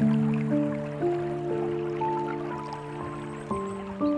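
Slow, gentle piano music, notes struck about every half second and left to ring and fade, over a faint bed of dripping, trickling water.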